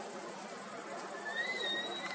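Crickets chirping in a steady, high, fast-pulsing trill, with a faint thin whistling tone about two-thirds of the way in.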